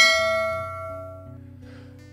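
A single bright bell ding, a notification-style sound effect, struck once and fading away over about a second and a half.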